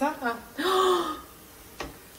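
A short, breathy vocal sound from a young woman, lasting about half a second, followed by a single faint click near the end.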